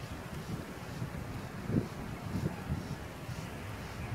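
Wind buffeting the phone's microphone: a low, uneven rumble with a few stronger gusts around the middle.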